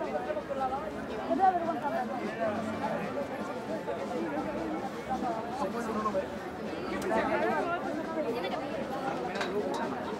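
Crowd of onlookers chattering, many voices talking at once with no single voice clear.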